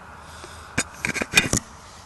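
A quick run of sharp clicks and knocks, from the phone recording the video being picked up and handled, about a second in, over a faint steady hiss.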